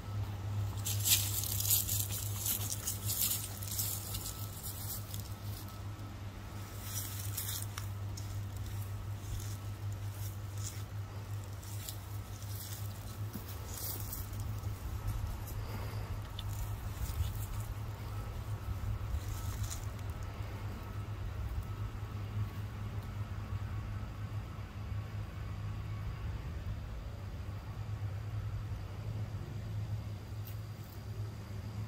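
Scattered light rustling and crackling, busiest in the first several seconds and thinning out after that, over a steady low hum.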